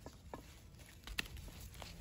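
A plant stem being cut off with garden clippers: one sharp snip about a second in, with a few fainter clicks and rustles of handling around it.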